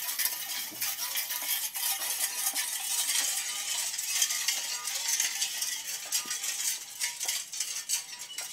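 Rain wheel sound sculpture: a metal barrel spinning on bearings, its contents giving a continuous dense patter like rain or a shaker, thinning a little near the end.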